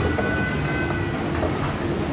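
Escalator running: a steady mechanical rumble with a faint hum.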